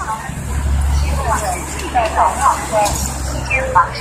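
Steady low rumble of a bus engine idling, with people's voices around it.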